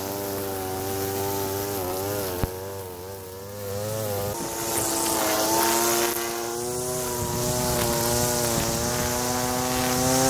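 Gas string trimmer engine running while cutting grass, its pitch wavering with the throttle. It eases off briefly about three seconds in, then runs higher and steadier for the rest.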